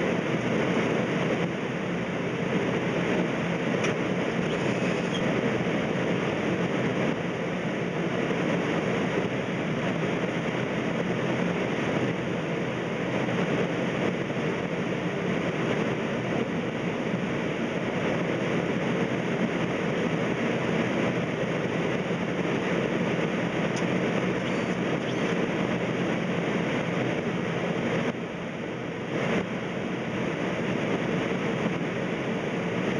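Steady rushing and rumbling of a Boeing 767 on final approach with gear down and flaps 30, heard inside the cockpit: airflow over the airframe mixed with engine noise. The noise drops briefly a little near the end.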